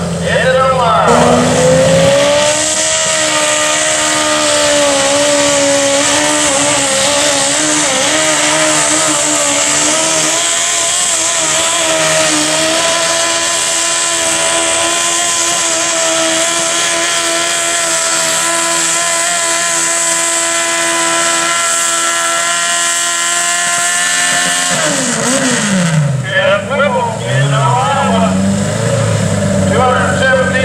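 Garden tractor pulling engine at full throttle dragging a weight-transfer sled. It revs up at the start, then holds a high, steady note that creeps slowly higher for about twenty seconds, and drops off sharply near the end as the pull stops.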